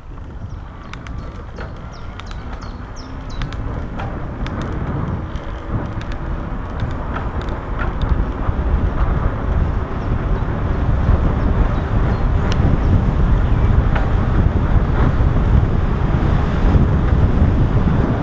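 Wind rushing over the camera microphone, building steadily louder as the mountain bike picks up speed downhill on asphalt, with scattered clicks and rattles from the bike.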